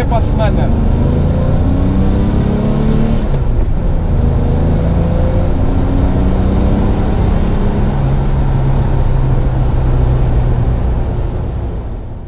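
1970 Porsche 911T's air-cooled flat-six engine pulling under acceleration. Its pitch climbs, drops sharply at a gear change about three seconds in, then climbs again, and the sound fades out at the very end.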